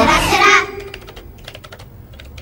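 Quick, irregular light taps of fingers typing on a tablet's touchscreen, a cartoon typing sound effect, following a short burst of voice in the first half second.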